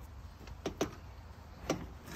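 Three short clicks from the choke lever on a Harley-Davidson WL's carburetor being set to full choke for a cold start: two in quick succession a little over half a second in, one more near the end, over a faint low hum.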